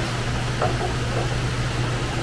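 Steady electric fan noise: a constant low motor hum under an even rush of air, with faint brief sounds about half a second in.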